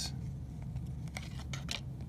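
Glossy trading cards being handled and slid off a stack by hand: a few faint ticks and rustles over a low steady hum.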